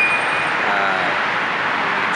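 Steady loud rushing background noise with no clear pitch, and a faint voice briefly underneath it about a second in.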